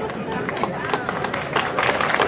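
Audience clapping that grows denser towards the end, over a murmur of voices from the crowd.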